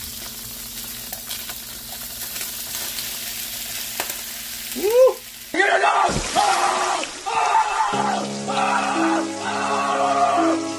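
Raw shrimp sizzling as they hit hot melted butter in a frying pan, a steady hiss for about five seconds. Then the sound cuts abruptly to a man yelling, with music coming in near the end.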